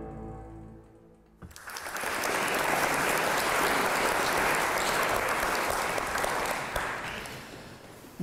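The tail of an intro music sting fades out in the first second. Then an audience starts applauding about a second and a half in, keeps it up steadily, and dies away near the end.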